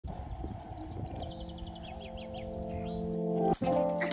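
A small bird twitters a quick run of short, high chirps over outdoor noise. Soft background music with held notes swells in under it and takes over, with a sudden break near the end.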